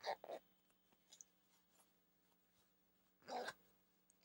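Near silence, with a few brief faint rustles at the start and again near the end: the fabric of a Bluetooth sleep mask handled as its control panel is tucked into its pocket.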